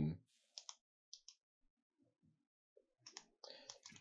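Faint, scattered clicks of computer keyboard keys: two pairs of single clicks in the first second or so, then a quicker run of clicks near the end.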